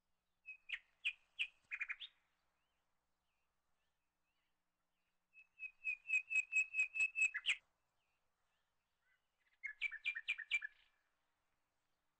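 Bird chirping in three short bursts of rapid repeated notes, the middle burst the longest and loudest.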